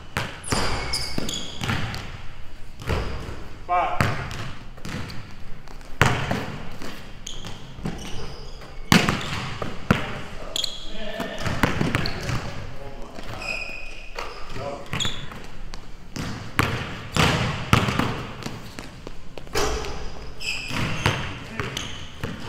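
A basketball being dribbled on an indoor gym court, with irregular bounces and short, high sneaker squeaks.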